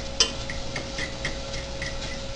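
A utensil clicking and scraping against a stainless steel saucepan as browning sausage is stirred: one sharp click just after the start, then light ticks about four a second, over a faint steady hum.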